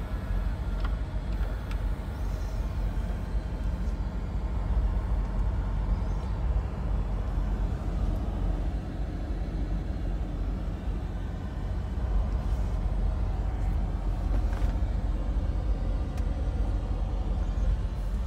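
Steady low rumble heard inside a car's cabin, with no sharp sounds.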